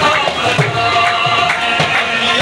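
Live qawwali music: harmoniums and a wavering male lead voice, over a steady clapping beat about twice a second.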